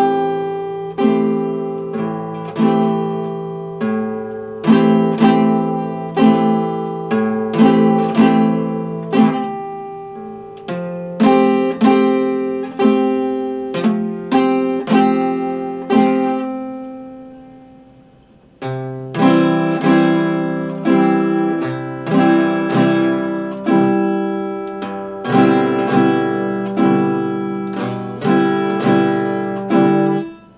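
Solo acoustic guitar, chords picked and struck about once or twice a second, with no singing. A little past the middle the playing pauses and the strings ring out for about two seconds before it resumes, and it stops near the end.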